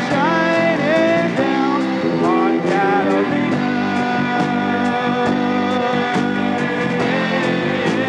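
Live rock band playing an instrumental break: a lead line bends and slides in pitch over sustained chords, with a steady beat.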